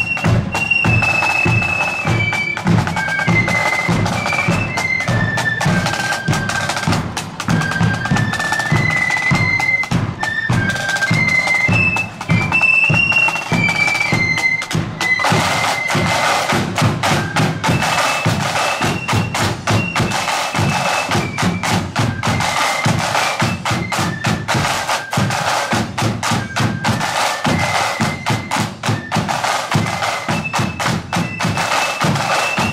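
Marching flute band playing a tune: shrill high flutes carry the melody over snare drums and a bass drum beating in march time. The drumming grows louder and fuller about halfway through.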